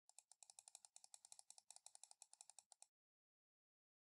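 Faint, rapid clicking of computer keyboard keys, about nine clicks a second for nearly three seconds, then stopping.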